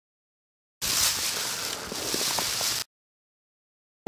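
Dead silence at the cuts, broken for about two seconds in the middle by a steady hiss of wind on the microphone that starts and stops abruptly.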